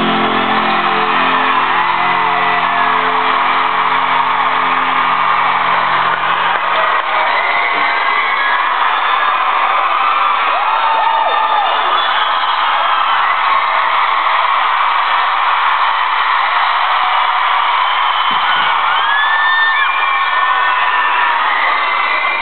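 A rock band's last chord held and ringing out over a screaming arena crowd for about six seconds, then the chord stops and the crowd keeps cheering, with high shrieks and whoops standing out above it.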